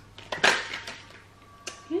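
A tarot deck being handled and shuffled by hand: one short, sharp rustle of cards about half a second in, then a small click of a card near the end.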